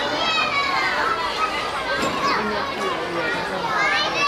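Many young kindergarten children's voices talking and calling out at once, high voices overlapping.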